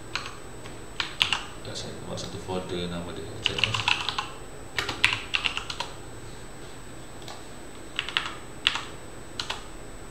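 Typing on a computer keyboard in irregular bursts, with a quick run of keystrokes around four seconds in and another about five seconds in, then a few single clicks near the end.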